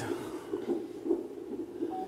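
Doppler sound of a fetal heart monitor on a mother in labour with twins: the whooshing pulse of an unborn baby's heartbeat, beating in a regular rhythm. A short electronic beep from the monitor starts right at the end.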